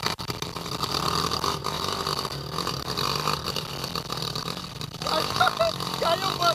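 Dirt bike engine running at low, steady revs as the bike works up a rocky climb. Voices come in briefly near the end.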